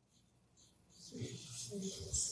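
About a second of near silence, then faint, off-microphone voices of a small group beginning to murmur answers in a small room.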